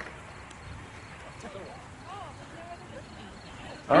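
Faint, distant voices calling a few times over a low, steady outdoor background hiss.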